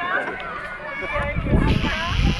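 Several people chatting at a distance, with indistinct background conversation and a low rumble joining in about a second in.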